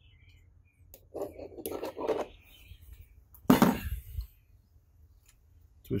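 Hand wire strippers at work on a red automotive wire: small clicks and rustling handling noises as the insulation is stripped off, with one loud, sudden noise about three and a half seconds in.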